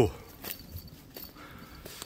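Faint footsteps on a slope covered in fallen leaves: a few soft crunches and ticks, irregularly spaced.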